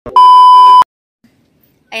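A loud, steady, high-pitched test-tone beep of a TV colour-bars 'no signal' effect. It lasts under a second and cuts off suddenly.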